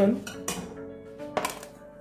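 A glass blender jar knocks once as it is handled, about a second and a half in, over soft background guitar music.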